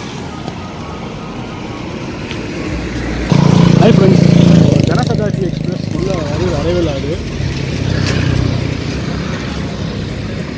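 Road traffic on a bridge roadway: steady motor noise, with a vehicle's engine suddenly loud about three seconds in for a second or two and a wavering pitched sound over it, then easing back as a motor scooter goes by.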